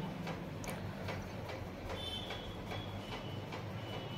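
Quiet room background: a low steady hum with soft, regular ticks about two or three a second, and a brief thin high tone near the middle.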